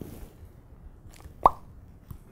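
A single short, loud 'plop' sound effect about a second and a half in: a quick upward-sweeping blip over quiet room tone.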